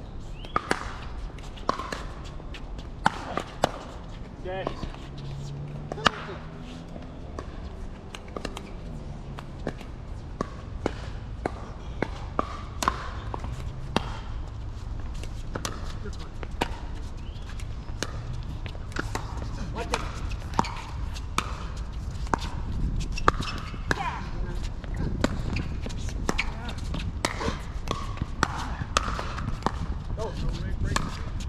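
Pickleball rally: repeated sharp pops of paddles striking the hollow plastic ball, some loud and close, others fainter, with voices in the background.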